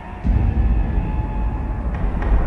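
News title-sequence sound design: a deep, low rumble that swells up about a quarter of a second in and holds.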